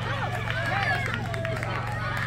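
Overlapping voices of spectators and players calling out and chattering, with no single clear voice, over a steady low hum.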